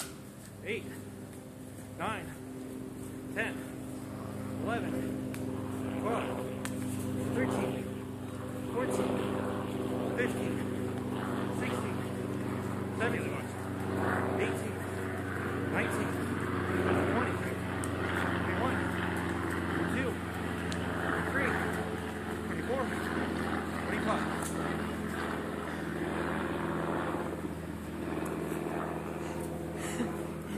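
A man's voice calling out a kick count at a steady pace, about one number every 1.3 seconds, over the steady hum of an engine running.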